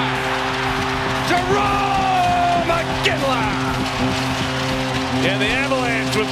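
Arena goal horn sounding one long steady blast after a goal, over a cheering crowd.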